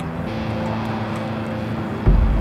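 Steady background roar of city street ambience, like distant traffic, with a quiet sustained music bed underneath.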